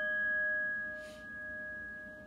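A struck metal chime ringing on after the strike, a clear sustained tone with a few higher overtones, slowly fading with a gentle swelling and dipping in level.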